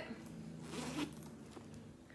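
A metal zipper on the front pocket of a black pebbled-leather backpack being pulled open: a faint rasping slide, louder for a moment a little under a second in.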